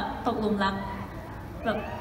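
Speech only: a woman talking into a microphone over the hall's sound system, quieter than the talk on either side, with a pause in the middle.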